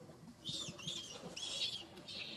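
Three short, high-pitched chirping calls, each rising and falling, coming one after another from about half a second in, over faint rustling of dry leaves.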